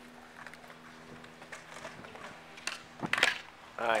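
A skateboard clatters loudly on concrete about three seconds in, after a few faint clicks of boards. A steady low hum runs underneath.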